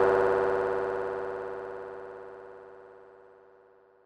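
Closing synthesizer chord of a Brazilian funk track, held after the beat stops and fading away evenly until it is gone about three seconds in.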